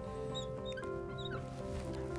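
Soft background music with steady held notes, and a few short, high squeaks from a marker being written across a glass board.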